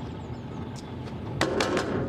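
Refuse lorry engine running at idle, a steady low rumble, with a sharp clatter about one and a half seconds in.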